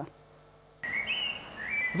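A short near-silent pause, then outdoor background noise comes in about a second in with a few short, high whistled bird chirps, each note holding a steady pitch or stepping upward.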